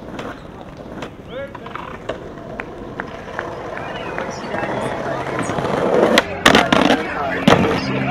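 Skateboard wheels rolling over stone paving, growing louder, with several sharp clacks of the board striking the ground about six to seven and a half seconds in.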